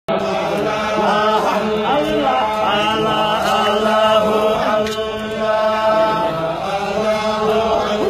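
A group of men chanting a Sufi devotional chant together, their voices held on long, steady notes.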